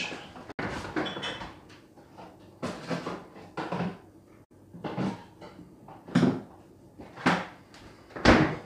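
Knocks and clunks of a fridge door and containers being handled, about one a second.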